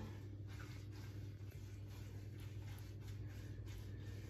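Faint swishing strokes of a pastry brush spreading oil over a metal baking tray, over a steady low hum.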